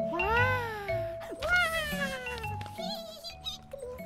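Two long meow-like calls, the first rising and then falling in pitch, the second falling slowly, over soft background music, with a few fainter wavering calls near the end.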